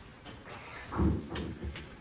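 Quiet room noise with a single dull thump about halfway through and a few light clicks.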